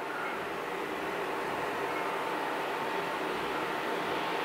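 Steady background hiss of room noise with a faint steady hum-tone, and no clanks or other distinct events.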